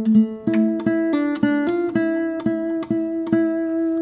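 Guitar played with a flat pick: a short melodic line of single picked notes, about three or four a second, each ringing into the next. The pick is angled and pushes the string down and in, for a darker, less bright tone.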